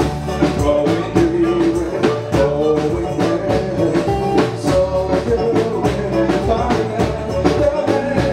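Live band music with a male lead singer and backing vocals over electric bass and drum kit, playing a steady beat.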